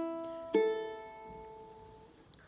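Ukulele open strings plucked one at a time in standard G-C-E-A tuning: the E string rings on from a pluck just before, then the 1st (A) string is plucked about half a second in and rings out, fading. The notes are the standard open-string pitches.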